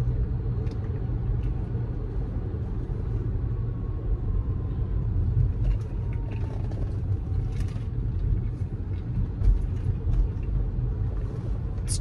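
Steady low road and tyre rumble heard from inside the cabin of a moving Tesla Model S. The car is electric, so there is no engine note.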